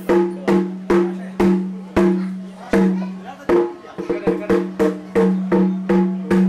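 Kerala temple percussion: a pitched drum struck hard in an uneven rhythm, about two or three strokes a second. Each stroke rings with a clear low tone before it fades, and a quicker run of lighter strokes comes around the middle.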